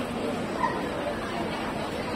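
Background chatter of people nearby, with one short, sharp yelp about half a second in.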